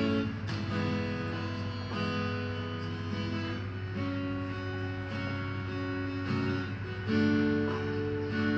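Acoustic guitar playing a slow chord introduction to a song, the chords changing about every second or so, over a steady low hum.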